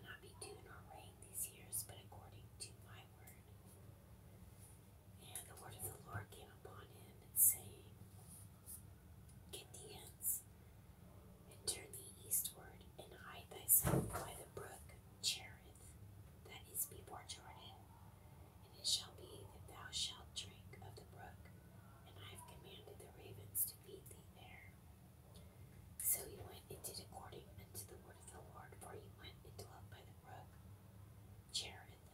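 A person whispering, reading aloud, with crisp hissing sibilants over a faint steady low hum. A single sharp knock sounds about halfway through.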